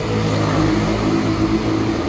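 A motor vehicle's engine running close by: a steady low engine hum that grows a little louder about half a second in.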